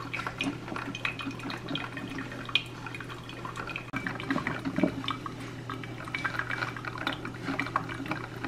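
Drip coffee maker brewing: coffee trickling and dripping from the brew basket into the glass carafe through a paper napkin used as a makeshift filter, with irregular small ticks and sputters. A steady low hum runs underneath.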